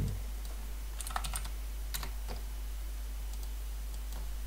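Scattered keystrokes on a computer keyboard: a cluster of clicks about a second in, a couple more near the middle and a few faint ones later, over a steady low hum.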